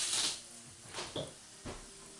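Hand sprayer hissing out a fine mist of water in a short burst, then briefly again about a second in, with a couple of soft knocks.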